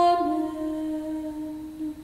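Solo female voice singing plainchant, holding the last note of the closing 'Amen' on a hummed 'm'. The note steps down slightly just after the start, is held, then fades away near the end.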